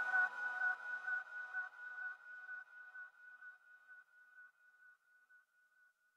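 Electronic dance track fading out at its end: a single high note keeps pulsing about twice a second as the lower parts drop away, dying to almost nothing near the end.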